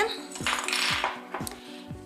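A set of small cat-head measuring spoons clinking and rattling together as they are picked up and handled, with a short rattly burst about halfway through.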